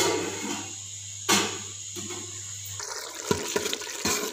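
Gas burner hissing steadily under a cooking pot, with two sharp metal clanks, one at the very start and one about a second and a half in, as a steel lid is handled and set on the pot. Near the end the steady hiss stops and gives way to a few light clicks.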